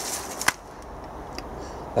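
Quiet outdoor background with one sharp click about half a second in, then a steady faint low hum.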